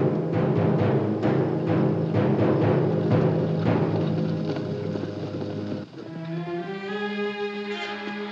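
Orchestral film score with a steady drum beat, about two strokes a second, over the orchestra. The drumming stops about six seconds in, leaving held chords.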